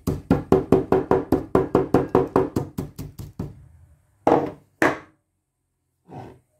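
A stone pestle pounding dried whole spices in a stone mortar: quick knocks about five a second that grow fainter. Two louder strokes follow near the end.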